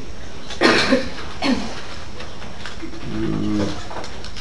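A man coughing, one harsh cough a little over half a second in and a smaller one about a second later, then a short low hum of the voice near the end.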